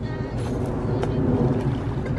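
Outdoor wind rumbling against the microphone, a steady low noise with no clear events over it.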